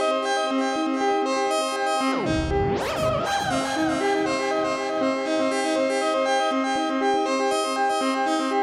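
VCV Rack software modular synthesizer playing a stepped sequence of short notes, its filter cutoff sequenced and its parameters tweaked live from a hardware MIDI controller. About two seconds in, a sweep dives down in pitch and then rises sharply before the sequence carries on.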